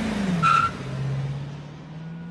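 Honda CR-V SUV engine revving as the car pulls away: the pitch rises, falls back, then settles into a steady hum. A brief high squeal, like a tyre chirp, comes about half a second in.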